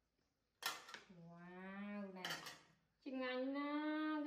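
Metal tongs and spatula clinking against a plate and wok twice. Between and after the clinks come two long held vocal notes from a person, the second higher and steady.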